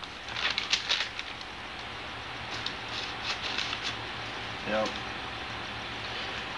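Sheets of paper rustling as they are handled, in two short spells of scratchy rustles, one just at the start and one around the middle, over a steady tape hiss and low hum.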